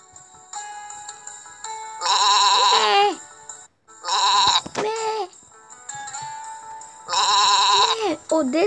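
Sheep bleating as a story-app sound effect: three wavering bleats about a second long each, about two, four and seven seconds in, over soft background music.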